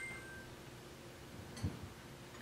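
Google Glass's faint electronic chime as a wink registers during calibration: two steady high notes sounding together right at the start, the upper one short and the lower one held about half a second. A soft low tap follows about a second and a half later.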